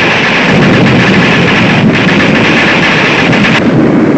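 Battlefield sound effect: a continuous low rumble of explosions and gunfire. A brighter, noisier layer sits over it, breaks briefly about two seconds in, and cuts off near the end.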